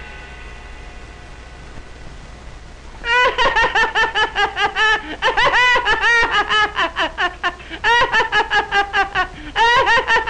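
Cartoon character's loud laughter, a rapid run of "ha-ha" and "haw-haw" syllables. It starts about three seconds in and goes on in several quick bursts with brief breaks between them.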